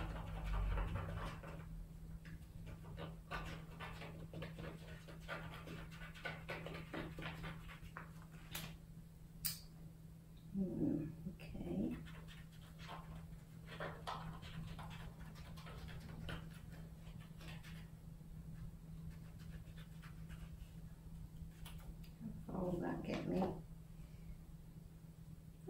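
Scissors snipping and paper rustling as a painted paper sheet is cut by hand, in short scattered snips and crinkles. Two brief voice-like sounds come about halfway through and again near the end.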